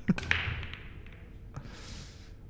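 A 9-ball break shot: a sharp crack as the cue ball hits the rack, then fainter clicks as the balls scatter and knock together on the table, and a short hiss near the end. It is a dry break, with no ball pocketed.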